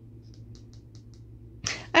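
Faint, quick ticks of a tarot deck being handled and shuffled, about six in a second, over a steady low hum. A voice breaks in near the end.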